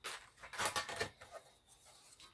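Thin sheet-steel shield rattling and scraping against the computer's metal chassis as it is pulled off, a quick run of light metallic clatters that dies away after about a second and a half.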